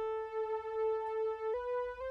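Sylenth1 software synth playing a single-sawtooth mono lead through a bandpass filter: one note held steadily, then a step up to a slightly higher note about one and a half seconds in.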